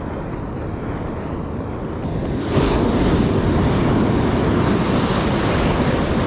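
Ocean surf washing in around the legs: a wave's whitewater rushes in loudly about two and a half seconds in and keeps foaming, over steady wind buffeting the microphone.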